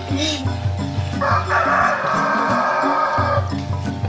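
A rooster crowing once, a call of about two seconds starting a little over a second in, over background music.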